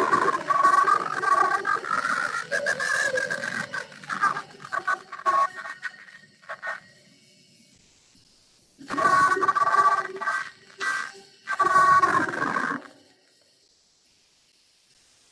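Playback of a recorded yoga nidra guided-relaxation track: a long held, pitched passage, a pause of about three seconds, then a second passage that stops shortly before the end.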